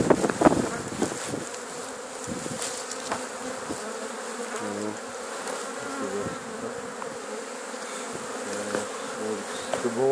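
A swarm of honeybees buzzing in a steady, wavering hum of many wingbeats while being shaken from a sheet into a box. A few knocks and rustles come in the first second.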